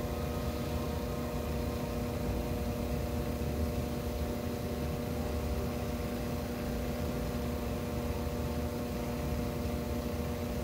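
Dremel rotary tool's small motor running at a steady high speed with a felt polishing tip fitted, while an agate is held against the tip for cerium oxide polishing.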